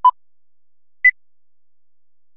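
Film-leader countdown beeps: two short electronic beeps a second apart, the second one higher in pitch.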